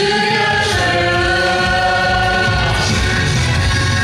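Several teenage voices singing a Korean trot song together into microphones over a backing track, with long held notes.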